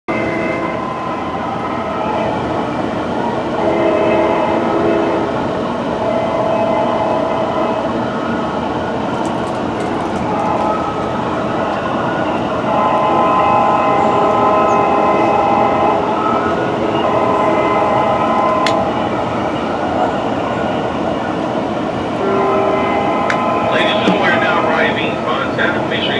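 A Metrolink train's Nathan K5LA five-chime air horn sounding a series of long chord blasts, heard from aboard the train over the steady running rumble of the cars.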